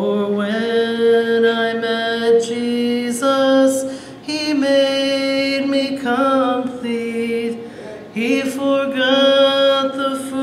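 A woman singing a gospel song solo into a microphone, holding long notes, with short breaks between phrases about four and eight seconds in.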